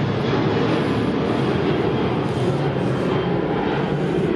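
Steady engine and road noise of a Mercedes-Benz E500's 5.5 litre V8 car on the move, heard as an even low rumble with no sudden events.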